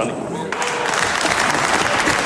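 Members of parliament applauding in the chamber. The clapping swells over about the first second and then holds steady.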